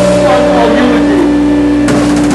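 Live hardcore band with a distorted electric guitar chord held and ringing out loudly. Drum hits crash back in near the end.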